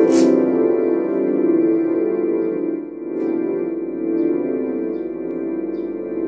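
Electronic keyboard played slowly: a chord struck at the start, then soft sustained, overlapping notes that ring on and slowly change.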